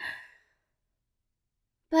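A short breathy sigh right at the start, fading out within about half a second, followed by silence until a voice begins speaking near the end.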